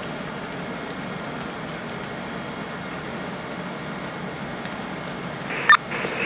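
Steady rumble and hiss of a working structure fire: a fire engine running nearby, mixed with a hose stream spraying water and the building burning. A short sharp click comes near the end.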